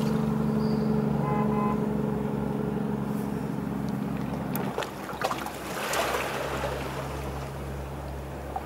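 A loud, steady, deep mechanical drone that cuts off suddenly about five seconds in. A few knocks follow, then a fainter low hum.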